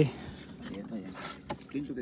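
Men's voices talking faintly, with a single sharp click about one and a half seconds in.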